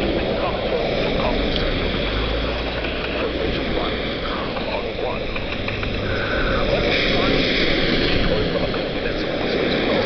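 Steady road and engine noise inside a moving car's cabin, driving in the rain.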